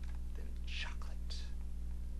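A steady low electrical hum, with two short breathy whispered sounds from a person at the microphone, the first a little before one second in and the second shortly after.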